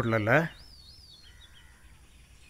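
Faint birdsong in the background ambience: a few short chirps that rise and fall, about a second in, after a brief spoken line.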